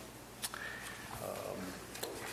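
A man's drawn-out, hesitant "um", with a single sharp click just before it.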